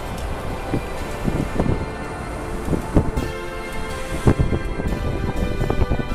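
Background music with percussive hits, over a low noisy rumble.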